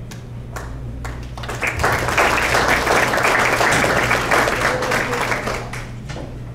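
Audience applauding: a few scattered claps at first, then the applause builds about a second and a half in and dies away just before the end.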